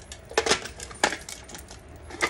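Dice clicking and rattling inside a small clear plastic box as it is tipped and handled, with two sharper clicks about half a second and a second in.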